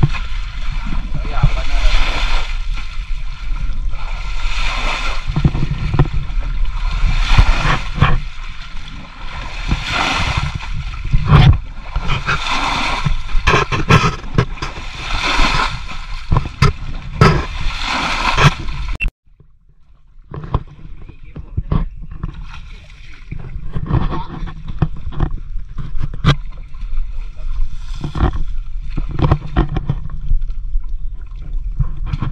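A plastic bucket scooping muddy water out of a shallow pool and tipping it out, splashing about every two to three seconds as the pool is bailed dry. The sound cuts off abruptly about two-thirds of the way through, then quieter splashing resumes.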